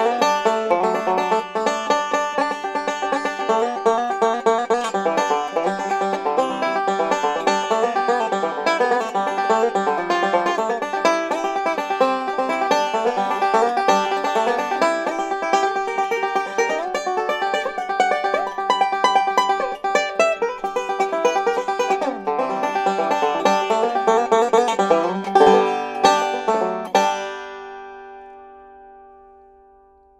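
Five-string resonator banjo played solo in bluegrass style, with fast, dense picked notes. About 27 seconds in it stops on a final chord that rings out and fades away.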